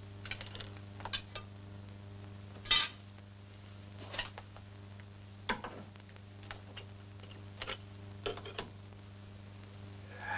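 Handling noise of a search through furniture: scattered clicks and knocks from drawers, a cupboard and a small box being opened and moved, the loudest nearly three seconds in, over the steady low hum of an old film soundtrack.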